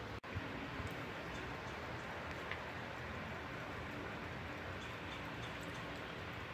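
Faint, steady background noise with a few soft ticks; no clear event stands out.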